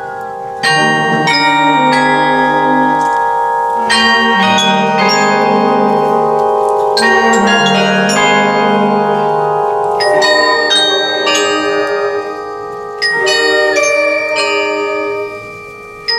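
Douai's truck-mounted mobile carillon playing a tune, its bronze bells struck in quick runs of notes that ring on and overlap, with a wind band of flutes, clarinets and saxophones holding lower notes underneath.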